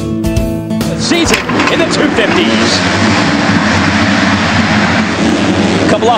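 Guitar music cuts off about a second in, giving way to a full gate of 250cc four-stroke motocross bikes racing off the start together, a dense, steady wall of engines at full throttle.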